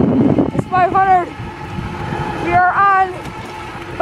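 A high-pitched voice speaking in two short stretches, over a steady rush of wind and road noise while riding.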